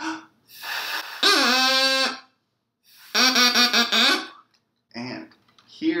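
A plastic drinking straw cut to a point and blown as a double reed, at its full length before any cutting: a breath of air hiss, then two held notes at the same low pitch, each about a second long, the first scooping up into pitch as it starts.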